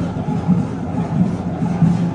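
Music with a steady, low drumbeat, about three beats a second.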